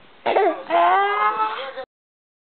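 Baby vocalizing: a short call falling in pitch, then a long, high, slightly rising squeal of about a second that cuts off suddenly.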